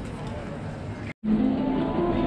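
Crowd chatter echoing in a busy stone town square. Just over a second in, an abrupt cut switches to street musicians playing, with held, ringing notes.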